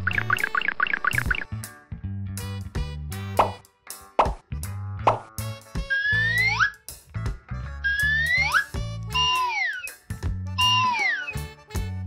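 Bouncy children's background music with cartoon sound effects: a warbling trill at the start, quick upward swoops a few seconds in, then several rising and falling whistle-like glides over the bass line.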